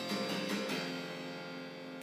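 Piano chord struck, with a few notes moving in the first moment, then held and slowly fading.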